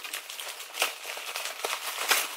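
Plastic bubble wrap crinkling and crackling as it is pulled off a package, with a sharper crackle a little under a second in.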